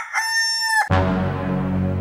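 Rooster crowing: the long held final note of the crow ends a little under a second in. It is followed by a low, steady drone with many overtones lasting about a second.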